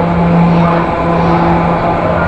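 Carousel running: a steady rumble with a low held tone that breaks off and resumes about once a second, and fainter higher tones above it.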